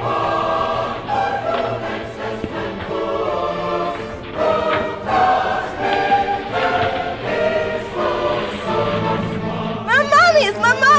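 Choral music: a choir singing sustained chords that change every second or so.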